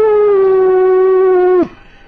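A man's voice giving one long, high, drawn-out cry, held at a steady pitch for about a second and a half and then cut off sharply.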